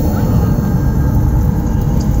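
A car moving slowly, heard from inside the cabin: a steady low rumble of engine and tyres.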